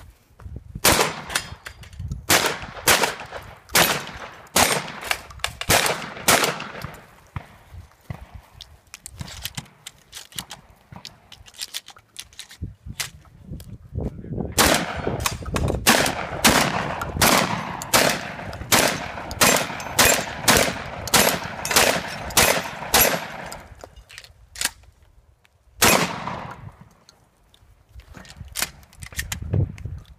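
Benelli M2 semi-automatic shotgun fired in quick strings: a run of shots in the first several seconds, a pause with small clicks and handling noise, then a long fast string of about two shots a second, and one last single shot near the end.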